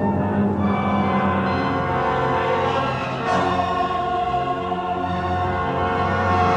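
Choir and orchestra performing a slow passage of a 20th-century choral oratorio, the voices singing held chords that change about three seconds in.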